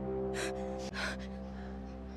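A held, sustained music chord with three sharp gasping breaths from a young woman over it, the last two close together: shaken, startled breathing.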